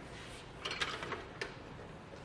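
A mountain bike being lifted off a platform hitch bike rack: a short cluster of light clicks and rattles a little after half a second in, then one sharp click.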